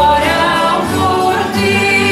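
A large ensemble of violas da terra, the Azorean folk guitar, playing a traditional tune, with singing carried over the strummed strings.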